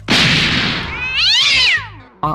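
Angry cat sound effect: a loud hiss that starts suddenly, then turns into a yowl that rises and falls in pitch, ending just before two seconds.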